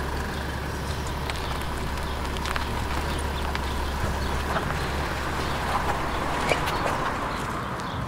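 A small car's engine running steadily as the car pulls away from the curb, fading near the end.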